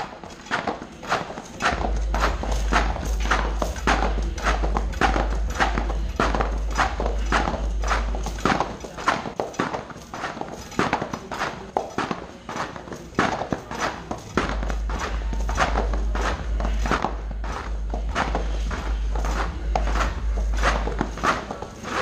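Heavy battle rope slammed with both hands onto foam gym floor mats over and over, in a steady rhythm of about two smashes a second.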